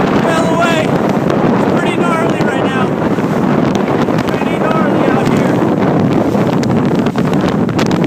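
Strong storm wind blowing over an open boat on whitecapped water, buffeting the microphone in a loud, steady rush.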